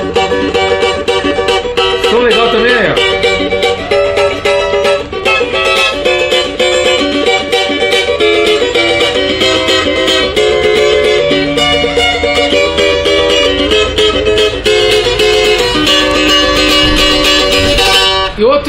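Beech-bodied cavaquinho with a solid top, freshly tuned, strummed in a steady rhythm with the chords changing throughout.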